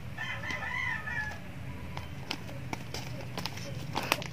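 A rooster crowing once in the background, a wavering call lasting a little over a second, followed by a few light clicks and taps of handling.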